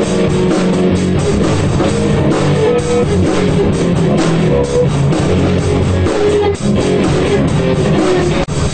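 Punk rock band playing loudly, with guitar and drum kit, and a brief drop about six and a half seconds in.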